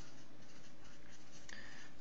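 Felt-tip marker writing a word on paper: a few short strokes of the pen tip rubbing across the sheet.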